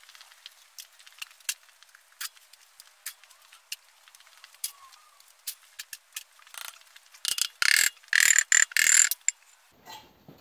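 Scattered metallic clicks and knocks from tools and bolts on a cast-iron Ford flathead V8 block. About seven seconds in come two seconds of loud, rattling metal-on-metal bursts with a ringing edge, as the work reaches the cylinder head.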